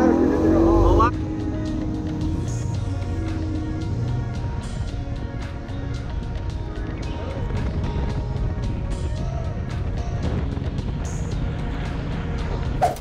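Outboard engines rising in pitch as the boat throttles up, cut off abruptly about a second in. Background music with a steady beat follows.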